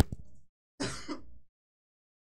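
A man clearing his throat, with a sharp click at the very start.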